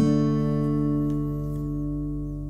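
Acoustic guitar's final strummed chord ringing out and slowly fading.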